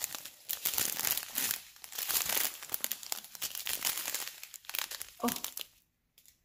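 Clear plastic drill packets crinkling as they are handled: a dense, continuous crackle of thin plastic that stops shortly before the end.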